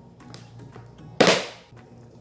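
A single sharp plastic snap about a second in, as the hinged front door of a clear plastic tarantula enclosure is pressed shut, over faint background music.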